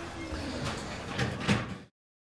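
Lecture-hall noise as the class ends: a faint rustling haze with a few knocks, the loudest about one and a half seconds in. The sound then cuts off abruptly to silence just before the end.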